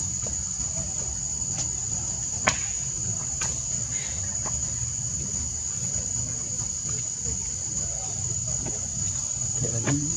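Steady high-pitched drone of insects in the trees, with one sharp click about two and a half seconds in.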